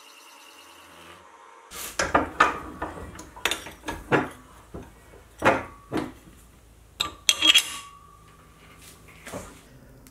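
Faint steady whine of the mini mill for about the first second, then a series of sharp clinks and knocks of metal parts being handled: an aluminium bracket plate and a steel tool holder being set in place. One louder knock about seven seconds in leaves a short faint ringing tone.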